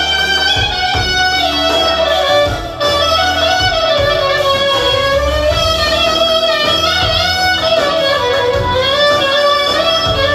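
Live band music with a clarinet playing the lead melody in bending, sliding notes over a steady accompaniment.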